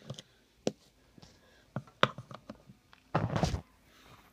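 Scattered light clicks and knocks of a wristwatch being handled and set into a timegrapher's plastic watch holder. There is a louder, longer burst of handling noise about three seconds in.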